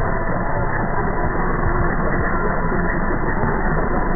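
Weak medium-wave AM broadcast on 747 kHz heard through an online SDR receiver: music buried in heavy static and co-channel interference, steady and unbroken.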